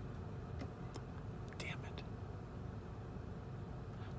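Faint steady low hum inside a car cabin, with a few softly muttered words.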